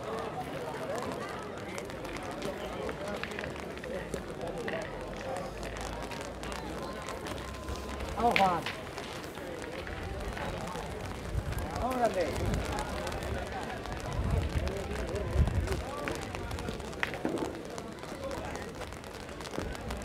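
People talking in the background, with gusts of wind rumbling on the microphone, heaviest in the middle of the stretch.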